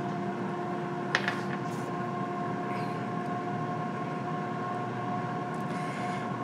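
Countertop air fryer running: a steady fan hum with a faint constant whine. A single short click about a second in.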